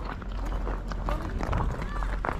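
Footsteps on packed snow, irregular and unhurried, with faint chatter of other people in the background and a low rumble on the microphone.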